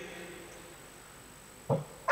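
A pause between speakers with faint steady background hiss. A single short vocal sound comes near the end, just before speech starts.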